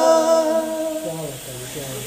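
A man singing unaccompanied, holding the last note of a Punjabi song, which fades and drops to a low hum about halfway through.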